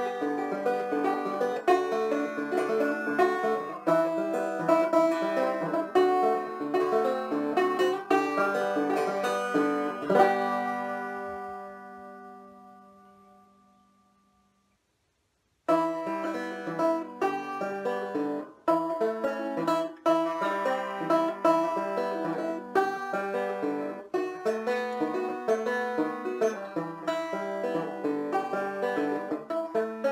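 Aklot five-string open-back banjo being played, a run of plucked notes and chords with the strings tuned G D G B E (Chicago-style tuning). About ten seconds in, the last chord rings out and fades away to silence, and after a short gap the playing starts again.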